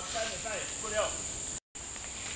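Steady high-pitched drone of insects in tropical forest, with faint calls from a person's voice in the first second. The sound drops out completely for a moment near the end.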